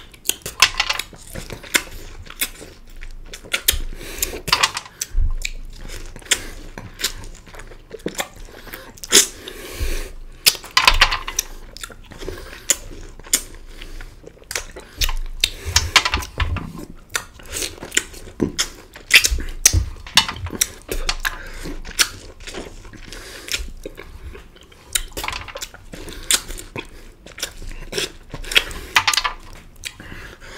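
Close-miked eating of green-skinned orange wedges: wet biting, sucking and chewing of the juicy flesh, with many short sharp clicks throughout.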